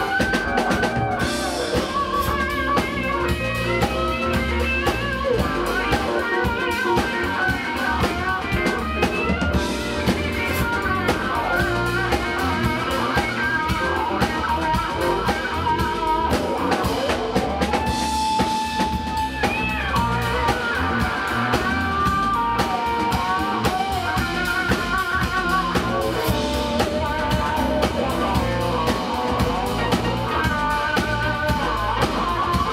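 A live band playing: a melodic electric guitar line with wavering, bent notes over a drum kit.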